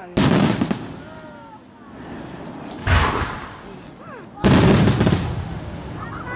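Fireworks shells exploding overhead: three loud bangs, the first right at the start, the next about three seconds in and the last about four and a half seconds in, each dying away within about a second.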